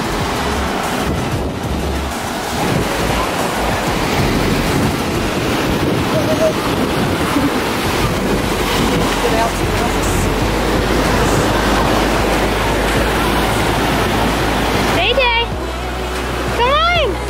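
Ocean surf washing onto a sandy beach, a steady hiss of breaking waves with wind rumbling on the microphone. Near the end a toddler gives a short high squeal that rises and falls.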